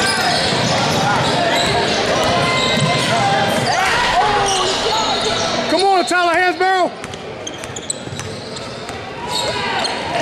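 Basketball being dribbled on a hardwood gym floor under echoing crowd chatter. About six seconds in, a quick run of rising-and-falling squeals is the loudest sound.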